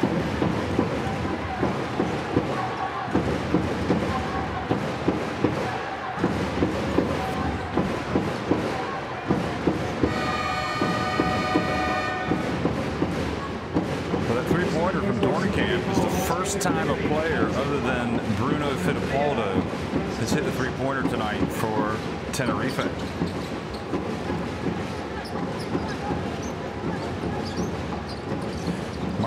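Arena crowd noise with music over the PA during a stoppage in a basketball game. About ten seconds in, a horn-like tone sounds for about two seconds. Later come sharp ball bounces on the hardwood.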